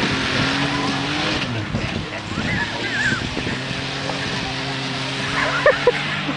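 Pickup truck engine revving hard as it climbs a rough off-road gully, its note rising and then falling in the first second or so before settling to a steadier pull.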